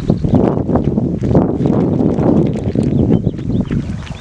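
Wind buffeting the microphone: an irregular low rumble with scattered knocks.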